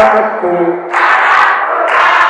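A man's voice sings a chanted line, and about a second in a large crowd of students sings and shouts the refrain back together, loud and massed.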